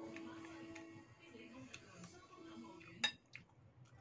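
A metal spoon clinking against a bowl while eating, with a few light clicks and one sharp clink about three seconds in.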